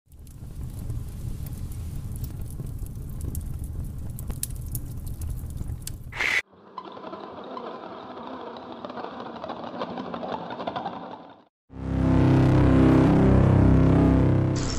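Intro sound effects and music in three parts. First a low rumble with many sharp crackles, ending in a short burst about six seconds in. Then a thinner, band-limited noisy passage, and after a brief silence a loud deep drone with several stacked pitches.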